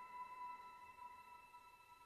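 The fading tail of a bell-like chime in intro music: a few steady ringing tones dying away, very quiet.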